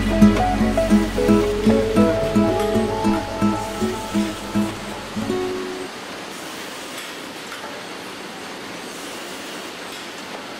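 Background music with plucked string notes over a low drone, ending about five and a half seconds in. After that only a steady, even machinery noise remains.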